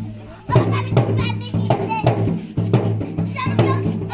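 Children's voices and shouts over music, with a drum beating a steady rhythm of about three strokes a second above a held low drone.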